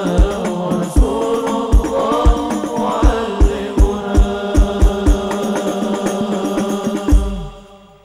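Group of male voices singing Islamic sholawat over frame-drum percussion, with deep drum strokes falling at a steady pace. The music ends on a final heavy drum stroke about seven seconds in and dies away.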